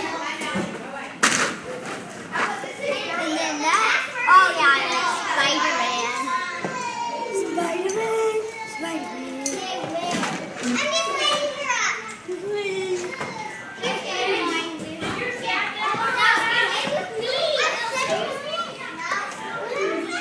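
Children playing in an indoor play structure, their high voices shouting and squealing without a break, with a sharp knock about a second in.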